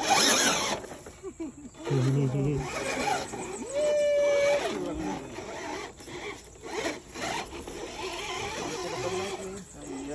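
People's voices calling out and exclaiming, with one long held call about four seconds in. A short noisy burst comes right at the start.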